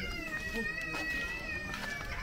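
A single long, high bleat from a sheep. It rises quickly at the start, then holds an almost steady pitch and sags slightly toward the end.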